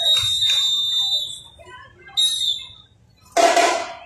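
A shrill whistle blown in one long blast and then a short one, followed near the end by drums and music starting up loudly.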